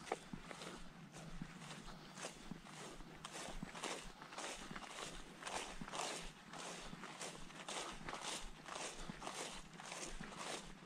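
Footsteps swishing through tall meadow grass at a steady walking pace, about two steps a second.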